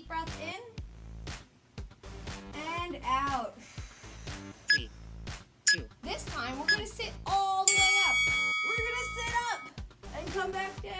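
Background music with a singing voice, including some long held notes near the end and a couple of short bell-like strikes in the middle.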